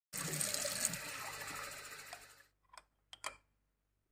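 Water running from a kitchen tap into a stainless steel sink, fading out about two and a half seconds in, followed by three brief knocks.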